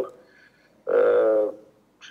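A man's single drawn-out hesitation vowel, an 'ăăă' held for about half a second, about a second in, between short pauses in his speech.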